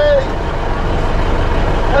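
Steady rumble of a train standing at the platform with its engine running, heard from the open doorway. The tail of a shouted word ends just at the start.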